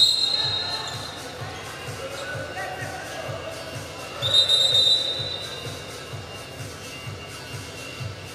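Two long, steady referee's whistle blasts, one at the start and one about four seconds in. Under them, arena music plays with a steady thumping beat of about three beats a second.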